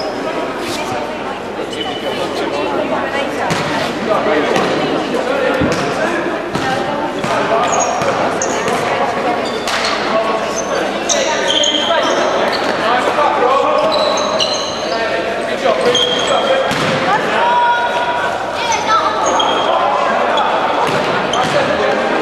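Basketball game in a large indoor sports hall: a ball bouncing on the court, many short high squeaks of players' shoes on the floor, and indistinct shouting voices, all echoing in the hall.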